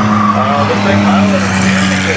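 A field of old street cars racing around an oval track, their engines running together in a steady drone, with a hiss building near the end as a car comes past close. A public-address announcer's voice carries over the top.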